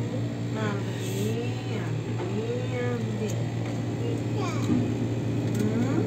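Steady low mechanical hum inside an enclosed observation-wheel gondola, with soft, indistinct voices over it.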